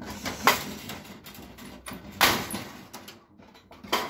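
Handling noise as a plastic fluorescent-tube starter is twisted in its socket inside a metal louvered light fixture: a short scrape about half a second in and a longer scraping rub just after two seconds.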